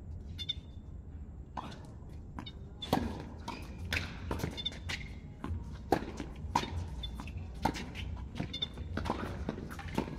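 Tennis balls struck by rackets and bouncing on a hard court during a doubles rally: a run of sharp knocks starting about a second and a half in, coming roughly every half second to a second.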